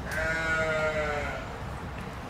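A single drawn-out bleat lasting just over a second, falling slightly in pitch.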